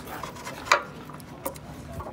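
Hinged metal tail-disc flap on a locomotive's end being flipped open by hand: a sharp metal clack, then a second, lighter one. Opening the disc to its full white face marks the locomotive as trailing.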